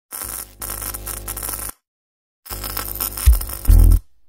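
TV static sound effect: hissing noise over a low hum, in two stretches broken by nearly a second of silence, ending in loud low bass hits.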